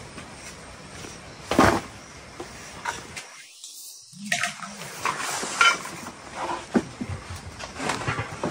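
Handling noises of a new electric rice cooker and its parts: small clicks, knocks and clatter, with one sharp knock about one and a half seconds in and a brief drop to near silence around the middle.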